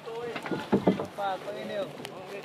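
Voices talking and calling out on the water, with two loud thumps close together a little under a second in.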